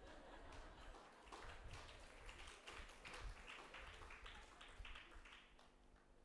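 Near silence, with faint, scattered short clicks through most of the pause.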